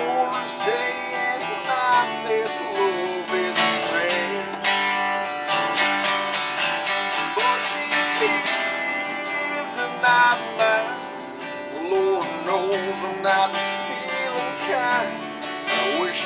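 Acoustic guitar strummed and picked, playing the accompaniment of a song at a steady level.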